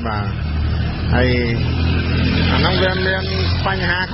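A few short spoken phrases over the steady low rumble of a motor vehicle's engine; the rumble drops away near the end.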